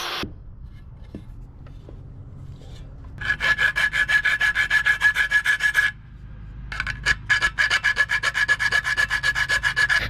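Fast back-and-forth strokes of a hand file on the metal case of a Honda P28 ECU, enlarging a cutout in its edge, each stroke with a high metallic ring. A rotary cutting tool stops just as it begins. The filing starts about three seconds in, pauses briefly around six seconds, then resumes.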